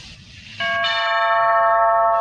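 Doorbell chime: two bell notes struck about a quarter second apart, about half a second in, both ringing on steadily.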